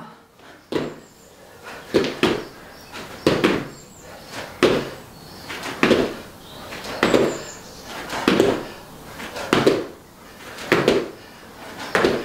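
Two people's trainers landing together on rubber gym floor tiles from repeated squat jumps: a thud about every 1.2 seconds, around ten in a row, in a small room.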